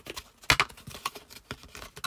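Card box lid being handled and pressed down on a glass craft mat: a sharp tap about half a second in, then light taps and rustles of card.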